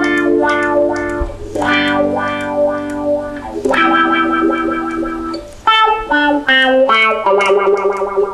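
Electric guitar played through a wah-wah pedal: chords whose tone sweeps as the pedal is rocked back and forth, going "wah wah". Long held chords give way to shorter, choppier stabs a little past halfway.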